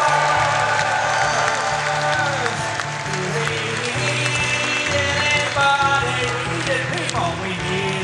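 Acoustic guitar strummed through a sung song, with the audience applauding and voices from the room.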